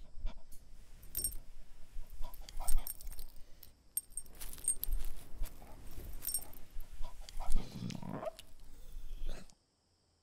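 A dog moving about and pawing at a cushion bed on dry leaves: scuffling and rustling, with the light jingle of collar tags. Near the end comes a brief vocal sound from the dog, and then the sound cuts off suddenly.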